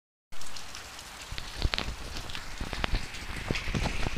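Heavy rain falling, with water pouring off a roof edge and splashing in irregular drops and splats. The sound starts abruptly a moment in.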